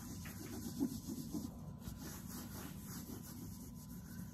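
A damp wipe rubbed over the coated monogram canvas of a handbag, wiping off saddle soap: a faint, uneven rubbing.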